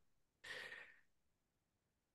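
Near silence, broken about half a second in by one faint, short breath from a man at his microphone, lasting about half a second.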